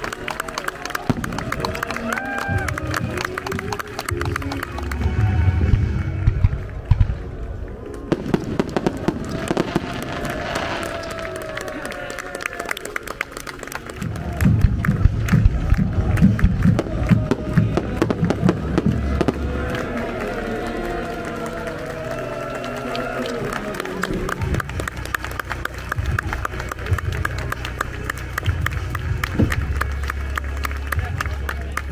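Aerial fireworks bursting overhead: low booms with crackling, heaviest about five to eight seconds in and again from about fourteen to twenty seconds. Music and crowd voices run underneath.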